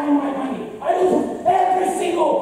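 A man's voice in long, drawn-out cries, three held shouts in a row: a stage actor declaiming in anguish.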